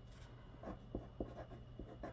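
A pen writing on paper: faint, short scratching strokes as the tip moves across the sheet.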